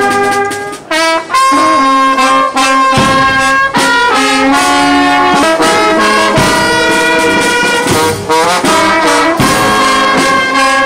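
A brass marching band of trombones and trumpets plays a tune in held notes, with a few bass drum strikes about three seconds apart.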